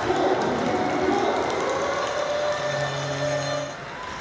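Ice hockey arena sound just after a goal: crowd noise with a voice or music over the public address, and a steady low tone held for about a second near the end.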